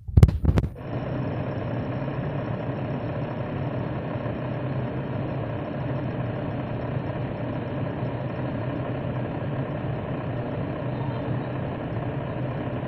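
A few handling clicks, then a steady, unchanging hum of an electric fan motor switched on and running.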